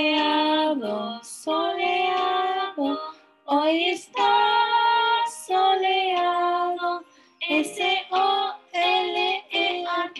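A children's weather song sung in Spanish: a woman's voice with children's voices in held, sung phrases over light instrumental backing.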